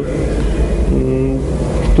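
Steady low background rumble during a pause in a man's speech, with a short held hesitation sound from his voice about a second in.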